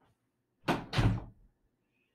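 Two heavy thumps in quick succession, the first a little over half a second in and the second about a third of a second later, longer and deeper, dying away within half a second.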